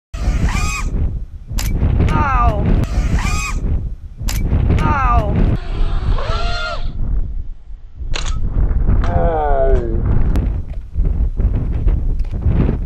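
A man's voice in several short phrases with strongly swooping pitch, words not made out, over heavy wind buffeting the microphone.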